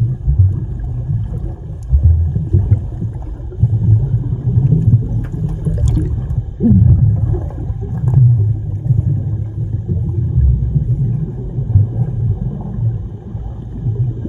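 Muffled low rumbling and churning of pool water heard underwater, stirred by several swimmers grappling, with a few faint clicks.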